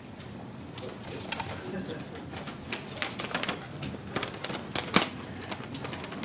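Papers being handled at a podium microphone: a run of irregular light clicks and rustles, the loudest about five seconds in, over faint murmuring voices.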